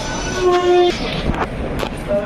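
A train horn sounds once at the station, a steady pitched blast just under a second long, over constant platform noise. A couple of sharp clicks follow.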